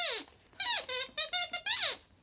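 A glove-puppet dog's squeaker voice, speaking in a quick run of short, high squeaky notes that rise and fall like talk.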